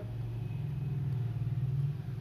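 A low, steady rumble that grows slowly louder and drops off near the end.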